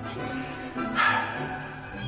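Background music with held, sustained tones, and one short sharper sound about a second in.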